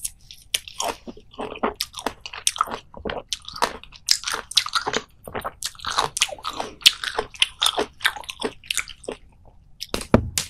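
Close-up biting and chewing of fresh lemon slices: quick, irregular, wet crunches and squelches of rind and pulp.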